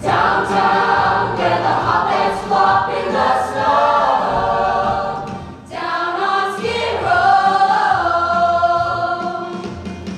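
A large chorus of voices singing a musical-theatre ensemble number over instrumental accompaniment, with a brief drop about five and a half seconds in before the voices come back in.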